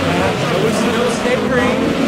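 Midget race cars' engines running hard as they lap a dirt oval, their pitch rising and falling.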